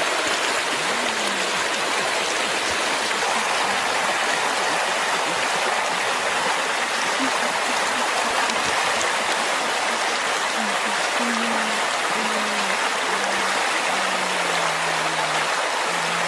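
A steady, even rushing noise with no breaks or distinct strikes.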